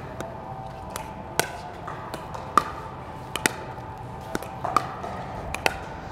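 Pickleball dink rally: sharp pops of paddles striking a plastic pickleball, mixed with softer bounces of the ball on the court, about one every half second to a second.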